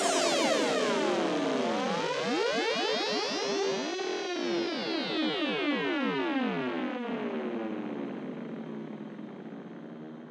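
Psytrance electronic music outro: swirling synthesizer sweeps over one slowly falling tone, fading out over the last couple of seconds.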